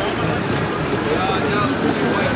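Outboard boat motors running steadily underway, with wind rushing over the microphone and water noise.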